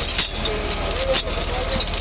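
Steel shovels scraping and digging into loose gravel ballast on a rail track, in several short strokes, over a truck engine running steadily.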